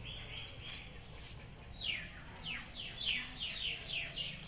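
A bird calling in a run of quick falling whistled notes, several a second, starting about halfway through and growing louder.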